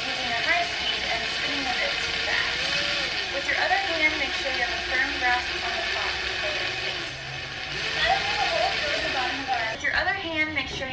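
Cordless drill running steadily, its bit grinding into the base of a ceramic pot; the hole is slow going. A voice talks over it.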